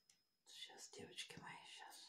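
A woman whispering quietly to herself, starting about half a second in and running for about a second and a half.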